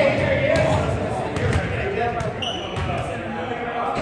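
Basketballs bouncing on a hardwood gym floor, a series of sharp thuds, with people talking in the background.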